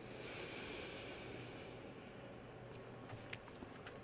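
Faint room tone: a steady low hum under soft hiss, with a breath-like rush of hiss for the first two seconds or so that fades out. There are a couple of faint clicks near the end.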